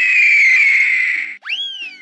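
Eagle screech sound effect: one long, harsh cry that falls slightly in pitch, over children's background music. About a second and a half in, a quick whistle-like glide rises sharply and then slowly falls.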